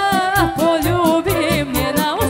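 Live Serbian folk band playing, with a singer carrying a wavering, heavily ornamented melody over a steady beat of drum hits, about four a second.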